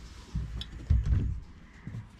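A few dull thumps of a clothes iron being pressed onto and lifted off a quilt block on a padded ironing board.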